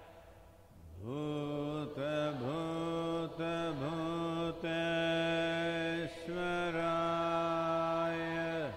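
A single male voice chanting a mantra in long held notes, with short dips in pitch between syllables; it comes in with a rising glide about a second in.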